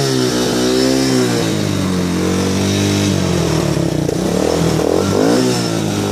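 A 125cc ATV engine running and being revved, its pitch rising and falling with the throttle. It settles lower and steadier for a couple of seconds midway, then gives a few quick blips near the end.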